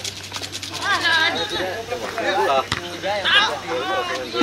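Voices of footballers and onlookers calling out across an open pitch in short shouts, with a few sharp knocks, one of them about two-thirds of the way through.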